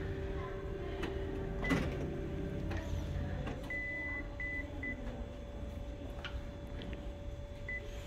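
Photocopier touchscreen beeping as keys are pressed: about five short high beeps at one pitch, one of them longer, over the copier's steady hum, which shifts to a higher note about three seconds in.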